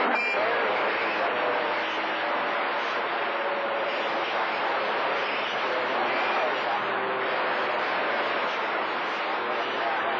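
CB radio receiver on channel 28 putting out steady static hiss between transmissions of long-distance skip. Faint, garbled voices and carrier tones of distant stations sit under the noise.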